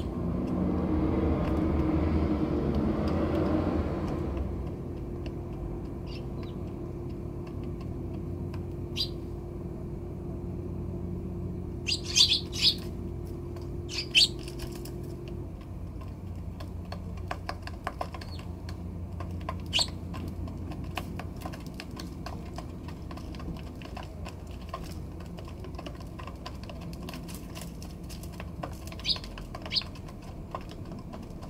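Eurasian tree sparrows giving a few short, sharp chirps, the loudest a cluster about twelve seconds in and another about two seconds later, over many faint ticks of pecking at the feeder. A low rumble fills the first four seconds, and a steady low hum runs until about halfway.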